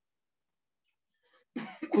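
Near silence for about a second and a half, then a man's short cough near the end, just before he speaks again.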